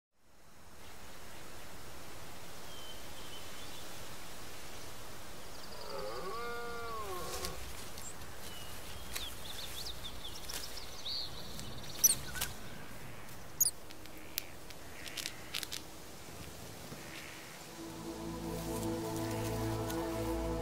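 Outdoor nature ambience: a steady faint background noise with birds chirping and calling, and one longer call that rises and falls in pitch about six seconds in. Two sharp, high calls near the twelve- and thirteen-second marks are the loudest sounds; soft music with sustained notes fades in near the end.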